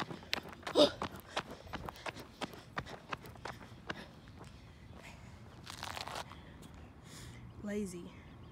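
Footsteps on a paved path, two or three a second, under heavy out-of-breath panting after climbing a hill. A loud gasp comes about a second in, a long breathy exhale around six seconds, and a short falling vocal sound near the end.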